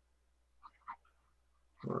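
Quiet room tone with two faint, short clicks a little under a second in, then a man's voice starts a word near the end.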